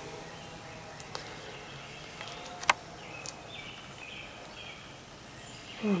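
Faint short high-pitched calls from baby owls in the second half, over a quiet background hiss, with a few light clicks and one sharp tick about halfway through.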